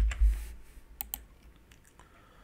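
Typing on a computer keyboard: a dull thump at the start, then two sharp key clicks in quick succession about a second in, with a few faint taps after.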